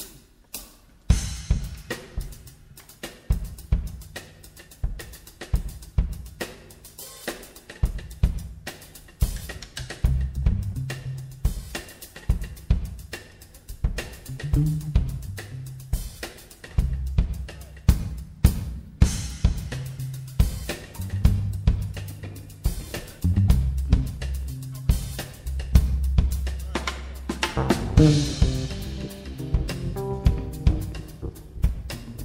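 Live band starting a funk-jazz tune: a drum kit groove of kick, snare, hi-hat and cymbals with a low electric bass line under it, starting about a second in. A cymbal swell and higher instrument notes come in near the end.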